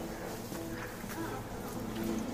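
A flying insect buzzing.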